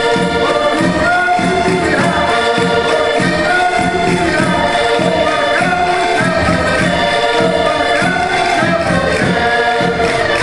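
Portuguese folk chula music from the Minho: a group singing together over accordions, with a steady driving beat.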